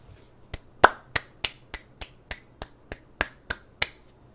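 Finger snapping: about a dozen crisp snaps in an even rhythm of roughly three a second, starting about half a second in, the second one the loudest.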